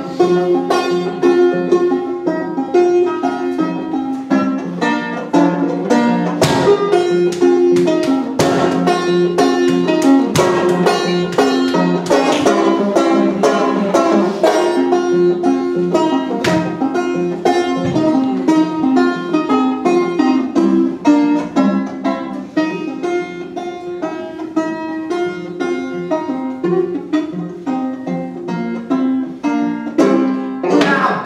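Solo banjo playing: a continuous run of picked notes.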